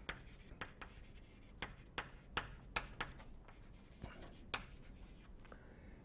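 Chalk writing on a blackboard: a quick, irregular series of short faint strokes and taps as the chalk meets the board.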